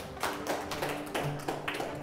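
A small group of people clapping, irregular separate hand claps rather than a full round of applause, over quiet background music.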